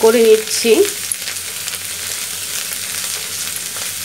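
Grated bottle gourd sizzling as it fries in a nonstick pan, stirred and scraped with a spatula; after a short spoken word in the first second the frying sizzle runs steadily.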